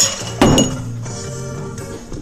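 Background music, with a short clink right at the start and a louder glass knock about half a second in as a cocktail glass is handled.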